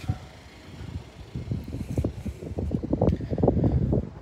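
Low wind rumble and irregular knocks of handling noise on a phone microphone, growing louder from about a second and a half in. Under them the power liftgate of a 2019 Chevrolet Blazer is opening, and a faint steady tone ends just after the start.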